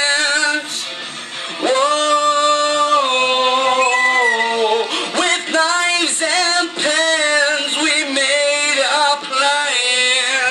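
A man singing a heavy metal song into a handheld microphone, with music playing under his voice. About two seconds in he holds one long note, then sings short phrases that bend in pitch.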